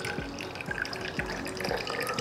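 Watermelon juice pouring in a thin stream from a portable blender bottle into a glass jug and splashing into the juice already in it, with music playing underneath.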